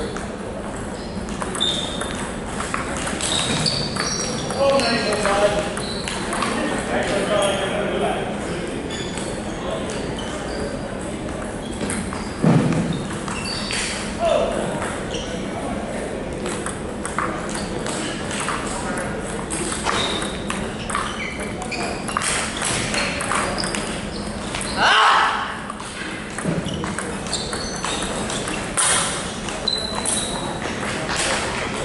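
Table tennis rallies: sharp clicks of the ball on the paddles and its bounces on the table, echoing in a large gym hall, with voices in the background.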